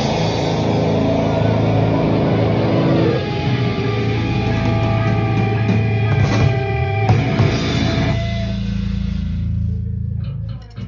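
Hardcore band playing live in a rehearsal room with distorted guitars and drum kit. About three seconds in, the full riff gives way to guitars holding ringing chords over a few scattered cymbal and drum hits. Near the end a low note rings on alone as the song ends.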